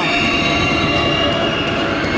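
Crowd in an indoor basketball gym keeping up a loud, steady din, with a high sustained whistling tone running through it.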